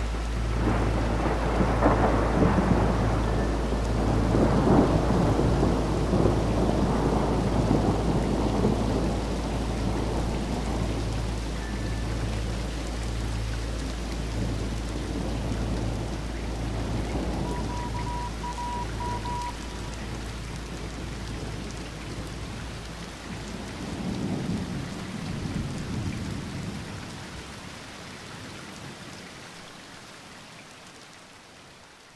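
Thunderstorm: steady rain with rolling thunder, heaviest over the first several seconds and rumbling again near the end before the sound fades out.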